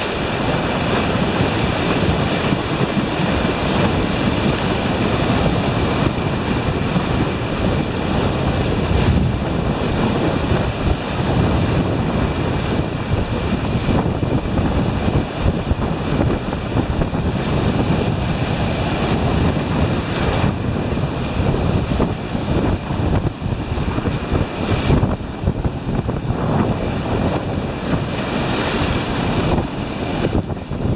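Ocean surf washing and breaking around the wading horses, with wind buffeting the microphone: a steady, loud rush of noise.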